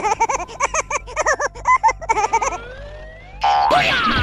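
Cartoon sound effects: a quick run of short, bouncy, high chirping calls that arch up and down in pitch, then a rising glide, then a loud whoosh near the end.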